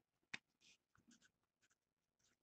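Faint strokes of a marker writing on paper, a series of short strokes a few tenths of a second apart, with a light click about a third of a second in.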